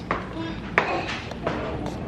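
A folding step stool being pulled out from beside the fridge and set down, giving a few knocks and clacks, the loudest about three-quarters of a second in.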